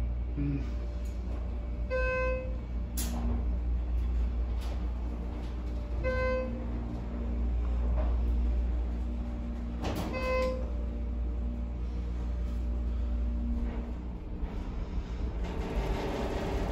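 Schindler 330A hydraulic elevator travelling up, with a steady low hum from the cab's ride and its hydraulic drive. Three short electronic chimes sound about four seconds apart as the car passes floors. The hum eases off near the end as the car slows.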